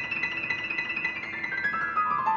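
Steinway grand piano being played: fast, evenly repeated high notes, then a descending run that starts about three-quarters of the way through and grows louder.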